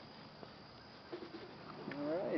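Quiet open-air ambience with a faint bird cooing briefly, about a second in.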